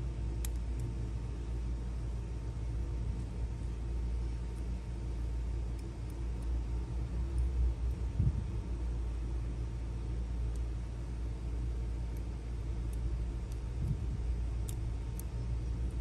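Steady low background rumble with a faint hum. A few faint small clicks come near the start and near the end, from steel tweezers loading springs and pins into a Schlage lock cylinder.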